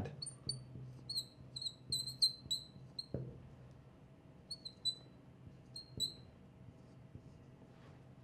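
Marker squeaking on a glass lightboard as an equation is written: a run of short high squeaks over the first few seconds, and a few more around five to six seconds in. Under them runs a faint steady hum.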